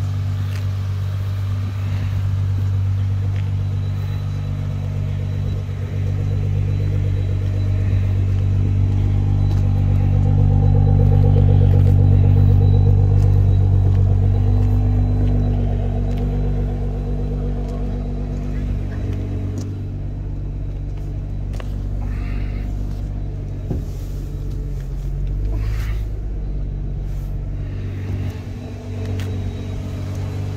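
Nissan GT-R R35's twin-turbo V6 idling steadily, a deep, even engine note. It grows louder through the middle and eases off again as the microphone passes the rear and exhaust.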